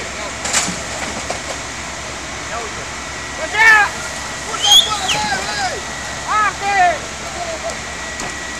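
Steady rushing noise at a building fire with fire hoses playing on it, broken by loud human shouts about three and a half seconds in and again around five and six and a half seconds.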